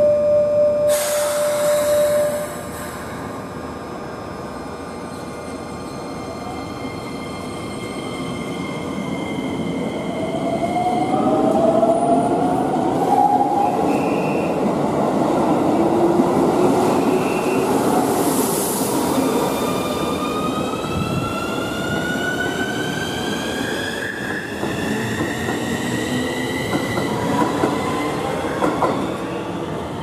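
Keikyu New 1000 series electric train pulling out of the station. After a steady tone that stops about two seconds in, the traction motors' inverter whine climbs in pitch in several layered tones as it accelerates, over wheel and rail rumble.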